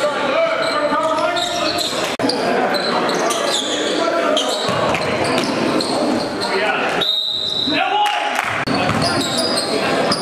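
Live court sound in a large gym: a basketball bouncing on the hardwood floor, with players' voices calling out over it.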